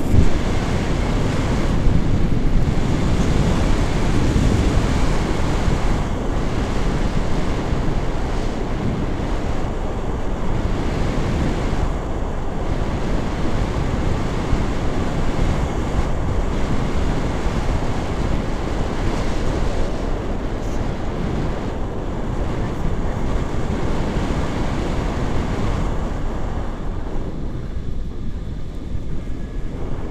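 Wind rushing over a camera's microphone during paraglider flight: a steady, loud, low rumble, easing a little near the end.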